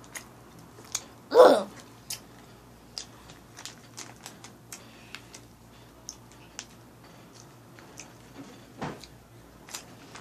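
A person chewing sour Skittles, with a scattering of small wet clicks and crunches from the mouth. A short, loud voiced sound about a second and a half in is the loudest thing, and a smaller one comes near the end.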